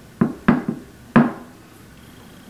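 Wooden box lid knocking and clicking as it is lifted open on its drilled-in hinge pins: four short, sharp knocks in a little over a second.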